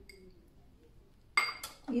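A sharp ringing clink about a second and a half in, followed by a lighter one: a small glass cup knocking against a stainless steel mixing bowl.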